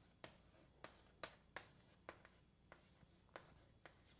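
Writing on a board: a series of faint, sharp taps and strokes, about eight of them, irregularly spaced, over a quiet room.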